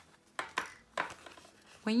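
Sticker sheets being handled and shuffled: a few short light taps and paper rustles in the first second, then a woman's voice begins near the end.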